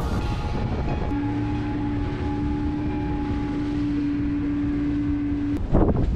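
Outboard motor running with the boat under way, over a steady rush of wind and water; a steady hum sits over it from about a second in until shortly before the end, where there is a brief loud burst.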